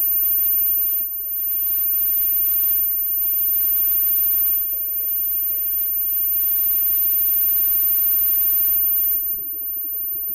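Live band playing amplified music with electric guitars, drums and keyboards. The sound thins out about nine seconds in.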